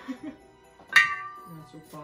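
A single sharp glass clink with a short ringing tone about a second in, over quiet Christmas background music with jingle bells.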